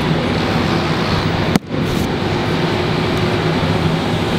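Steady hum of factory machinery and ventilation on a production floor, with a few low steady tones in it. About one and a half seconds in there is a single sharp click with a brief dip in level.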